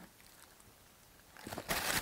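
Near silence, then faint rustling and light clicks from about one and a half seconds in as a small packaged item is handled.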